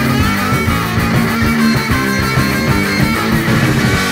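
Punk rock record playing: a guitar-driven instrumental stretch between sung lines, steady and loud throughout.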